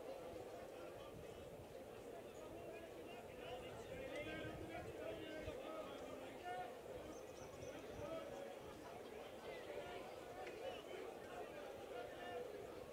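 Faint background voices talking, over a low steady murmur of outdoor noise.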